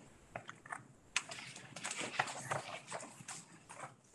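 Faint, irregular clicking and rustling: scattered small clicks at uneven intervals, with no steady sound beneath them.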